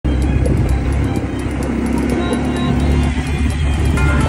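Background music over the steady low running of an off-road vehicle's engine.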